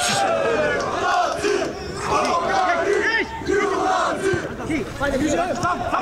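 Several men shouting and calling out over one another, the voices of players and spectators at a minifootball match.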